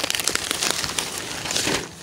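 Nylon pack fabric and webbing straps being handled, a crinkling rustle made of many small clicks that is busiest in the second half.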